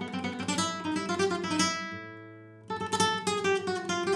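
Nylon-string guitar played with the flamenco picado technique: fast single-note runs of alternating rest strokes with a percussive attack. About halfway through, a run stops on a note left ringing, then a second fast run begins.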